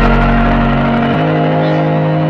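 Electronic dance music with no beat: sustained synth chords over a deep bass note that fades away, the chord shifting to a new pitch about a second in.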